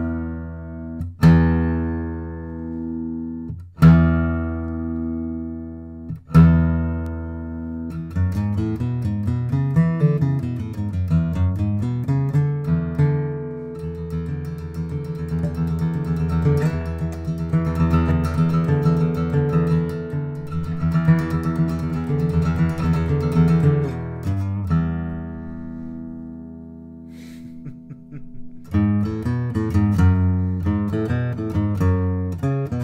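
1941 Gibson J-55 mahogany flat-top acoustic guitar, played to show off its big bass. Four strummed chords are each left to ring, then a quicker picked passage with moving bass notes follows. It ends on a chord that rings out and fades before playing starts again near the end.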